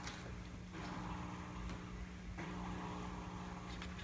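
Small battery motor of a motorized spinning-mouse cat toy whirring steadily and quietly while cats paw at it.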